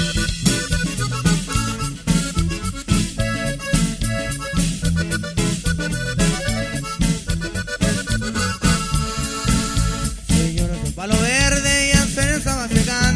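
Norteño band playing an instrumental break between verses: button accordion carries the melody over bajo sexto, electric bass and drums keeping a steady beat. Near the end the accordion plays a sliding run.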